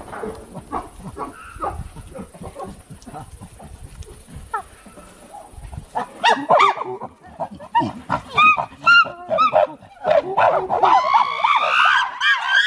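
Chimpanzees calling. About halfway through, a run of short, pitched hoots begins at about two a second, and it builds near the end into overlapping screams.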